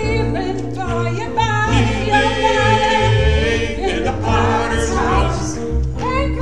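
A small group of singers sings a worship song in harmony, their held notes wavering with vibrato, accompanied by an upright piano.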